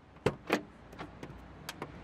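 Car door latch clicking open: two sharp clicks about a quarter second apart, followed by several lighter clicks and knocks.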